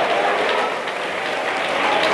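A congregation applauding, a steady even clapping from many hands.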